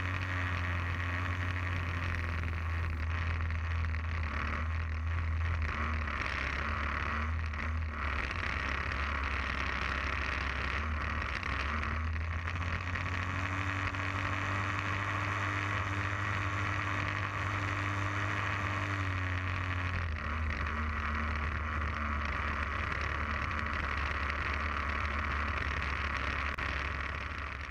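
Small fixed-wing UAV's engine and propeller running steadily in flight, heard from an onboard camera with airflow rushing past. The engine note rises a little about twelve seconds in and drops back about twenty seconds in.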